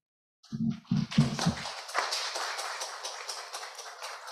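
Audience applauding, a dense patter of many hands clapping that starts about a second in and carries on, with a brief voice near the start.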